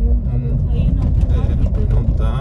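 Steady low rumble of a car's engine and tyres on the road, heard from inside the cabin while driving, with brief fragments of quiet speech.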